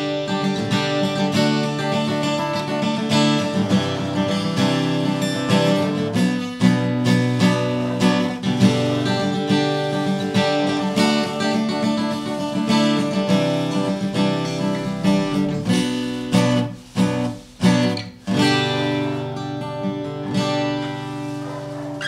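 Hofma HMF250 steel-string acoustic guitar with a sapele body and bone nut and saddle, strummed in chords with a thin 0.46 mm pick. The strumming runs on, with a few short breaks about three-quarters of the way through.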